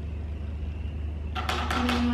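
A steady low room hum, with a woman's voice starting about a second and a half in.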